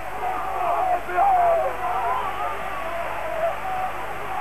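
A male sports commentator's excited shouting in long, drawn-out cries, celebrating the title-winning penalty, over a steady background din.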